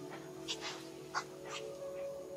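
Infant macaque crying in three short, high squeals.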